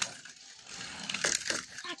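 A sharp click, then a run of small clicks and scraping as a small plastic toy engine is handled and moved on carpet, with a child's voice starting at the end.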